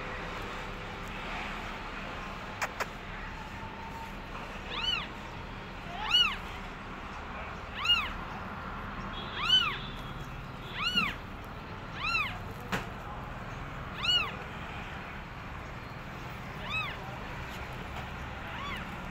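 Newborn kittens mewing: a series of about nine high, thin cries, each rising and falling in pitch, coming roughly one every second and a half from about four seconds in.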